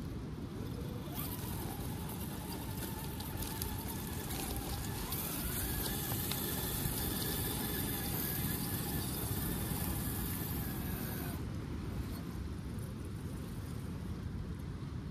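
Electric drive motor and gears of an RC rock crawler whining under load as it climbs a steep dirt slope. The whine starts about a second in, steps up in pitch about five seconds in, and cuts off a little past eleven seconds, over a steady low rumble.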